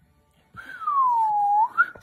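After the beat cuts out and half a second of silence, a single whistle-like tone comes in, about a second long, gliding down in pitch and back up at the end.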